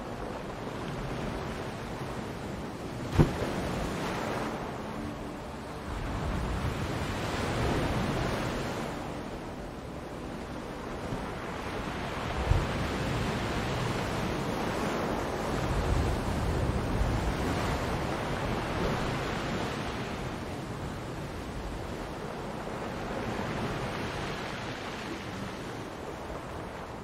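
Ocean waves washing in, the surf swelling and falling back in slow surges every several seconds. Two sharp knocks cut through, the louder about three seconds in and a second about twelve seconds in.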